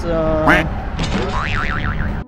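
A short voice-like sound sweeping sharply up in pitch, then, about a second in, a cartoon 'boing' sound effect whose pitch wobbles quickly up and down.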